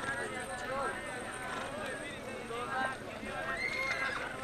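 Many voices of a seated crowd talking at once, with the hoofbeats of a horse stepping and prancing on dry dirt close by.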